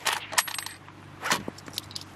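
Mauser K98k bolt-action rifle being reloaded after a shot: a series of sharp metallic clicks and clinks as the bolt is worked and the spent 7.62 mm brass case comes out, one clink ringing briefly. A louder click comes about a second and a half in.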